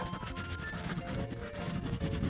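Crayola wax crayon rubbed rapidly back and forth on a coloring-book page, a dense run of scratchy strokes as an area is shaded in.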